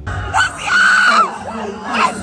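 A woman in a concert crowd screaming: one long, high-pitched scream held for about a second, starting shortly in, followed by shorter rising cries, over crowd noise and the concert's sound system.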